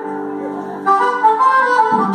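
Live band starting a song's instrumental intro: a held chord, then a louder melody line of changing notes comes in about a second in.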